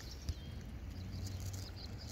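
Faint, steady outdoor background noise on open water: a low rumble with light hiss and no distinct events.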